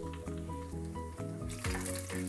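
Background music with steady notes. About halfway through, hot oil starts sizzling and crackling as a tempering of dried red chilies, garlic and mustard seeds is stirred in a clay pan.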